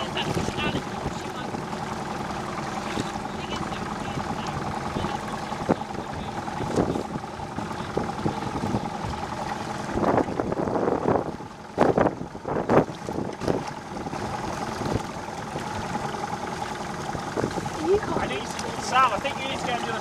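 A motorboat's engine drones steadily as the boat runs under way, with wind on the microphone and water noise. A few loud bursts of noise come about halfway through.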